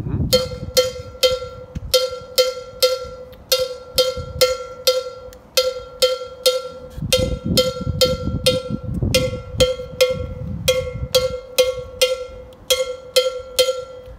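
A single hand-held metal cowbell-type bell, struck with a wooden stick, plays a repeating syncopated rhythm pattern, another of a series of different beats (batidas). Each strike is a short, bright ringing note, with some strokes louder than others.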